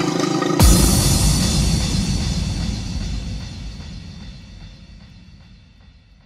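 The close of a hardstyle track: one final deep impact hit just over half a second in, then a long low tail that fades steadily away.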